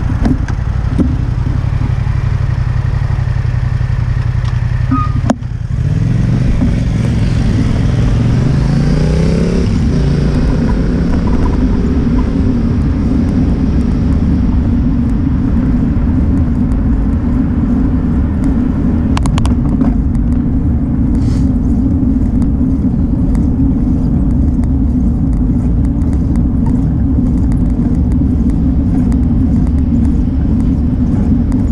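A motor vehicle's engine idling at a steady pitch, then speeding up with rising pitch about six seconds in. Under it and afterwards, a steady low rumble of wind on the microphone from a moving bicycle.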